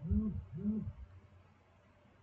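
A man humming two short hums, each rising then falling in pitch, in the first second, then near-quiet room tone.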